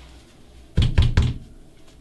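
Three quick knocks, a little under a second in, each a sharp, heavy strike.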